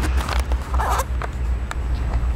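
Handheld camera microphone picking up a steady low rumble of wind, with several short rustling scrapes of handling noise in the first second and a couple of light clicks after.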